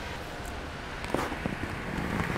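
Quiet city-street background with a low rumble and a few faint clicks a little over a second in.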